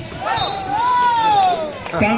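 A long drawn-out shout that rises and then slides down in pitch over about a second and a half, over a volleyball rally, with a couple of sharp smacks of the ball being hit.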